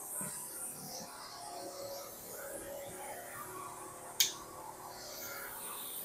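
Faint music playing from radios in the shop, with a single sharp click about four seconds in.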